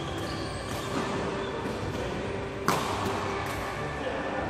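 Badminton racket striking a shuttlecock: one sharp, loud hit about two-thirds of the way through, with a fainter hit earlier, each ringing on briefly in a large echoing hall.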